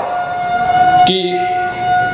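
Public-address microphone feedback: one steady, unwavering ringing tone through the loudspeakers, loud enough to stand out over the voice.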